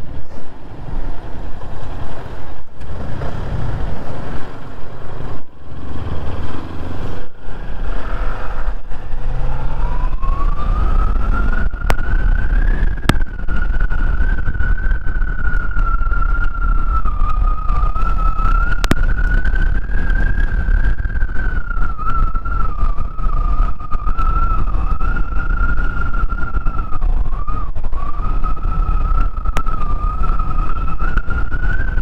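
Kawasaki Z400 parallel-twin motorcycle riding away with engine and wind noise, the first seconds broken by several short dips in the sound. About ten seconds in, a steady whine rises in pitch as the bike gathers speed, then holds with slight wobbles as it cruises.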